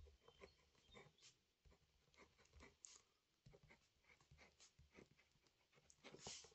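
Near silence: room tone with faint, irregular small clicks and rustles.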